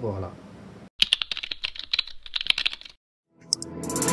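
Rapid keyboard-typing sound effect: about two seconds of quick clicks, several a second, then a short silence and a rising swell near the end that leads into intro music.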